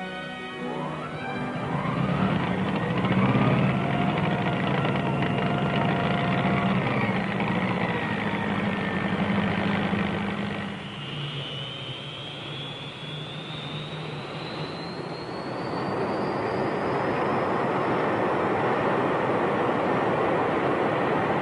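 Lockheed F-80 Shooting Star jet engine starting up: a turbine whine rises in pitch over a steady rushing noise and holds, then a second, higher whine climbs slowly from about ten seconds in as the engine spools up.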